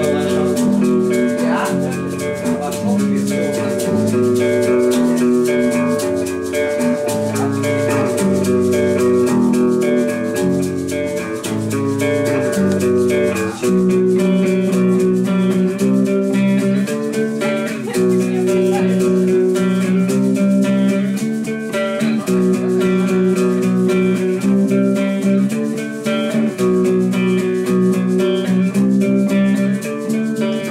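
Instrumental passage of an acoustic art-punk song: strummed guitar chords with a shaker keeping a steady, fast rhythm. The lowest notes fall away about halfway through.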